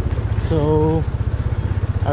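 Yamaha FZ25's single-cylinder engine running at low road speed, heard from the rider's seat as a steady low thrum of rapid, even firing pulses.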